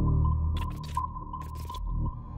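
Trailer-style ambient soundtrack music: a low drone under a high tone that pulses about once a second, broken by a few short bursts of noise.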